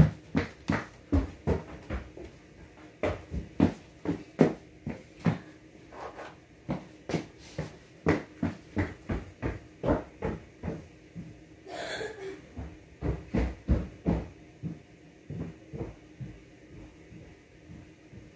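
A run of irregular knocks and thumps, about two a second, from someone moving about out of sight, thinning out near the end. A brief hiss comes about twelve seconds in.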